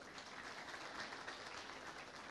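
Audience applauding faintly, a steady even patter of many hands clapping.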